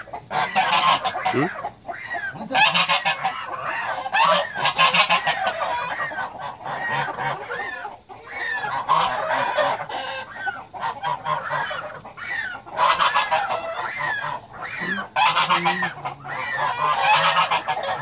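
African goose honking loudly and repeatedly, call after call, as it is held after being caught by hand: the distressed crying of a restrained goose.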